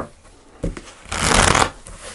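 A deck of tarot cards being riffle-shuffled by hand: a couple of sharp knocks as the two halves are handled, then a dense, quick riffle of the cards flicking together lasting about half a second, the loudest part, followed by soft taps as the deck is squared.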